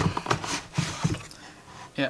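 Cardboard scraping and rustling as a paperboard inner tray is pulled out of a retail box: a few short rasping scrapes in the first second or so, then fainter rustling.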